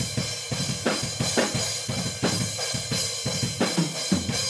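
Room-microphone recording of a full drum kit in a metal breakdown playing back: kick and snare hits under a steady cymbal wash, heavy in the low end, while a narrow EQ band is swept through the lows to find the kick drum's boom.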